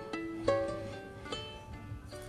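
Ukulele played on its own between sung lines: three strummed chords, about half a second in and again past the middle, each left to ring and fade.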